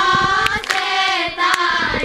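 A group of girls singing a song together in unison, with hand claps sounding at intervals through the singing.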